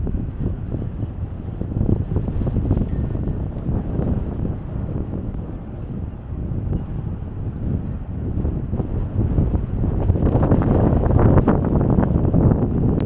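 Wind blowing across the microphone: a dense, low, fluttering rumble that grows stronger in the last two seconds.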